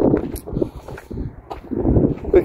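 Wind buffeting the phone's microphone: a gusty low rumble that swells and dips.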